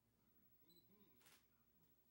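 Near silence: faint room tone, with a short high electronic beep just under a second in and a brief soft click-like hiss just after.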